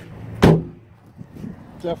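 A Ford E250 van door shut with a single bang about half a second in.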